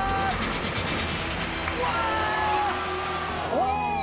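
Steady rushing of water pumped over the slope of an indoor stationary-wave surf machine, with a few drawn-out tones over it, the last one rising and then falling near the end.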